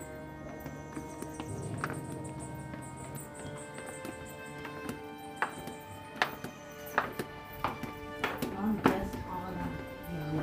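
Footsteps of several people in flip-flops on stone steps, sharp slaps coming roughly every three-quarters of a second from about halfway through, the loudest near the end, over steady background music.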